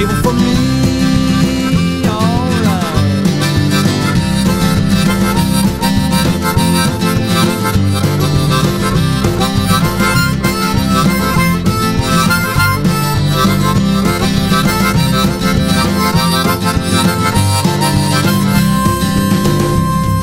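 Instrumental break in a rock/country band song with no singing: the band plays on steadily under a lead instrument soloing, with bent, gliding notes about two seconds in.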